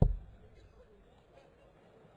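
A steel-tip dart striking a Unicorn bristle dartboard once with a sharp thud that dies away within about a quarter of a second, followed by low background murmur.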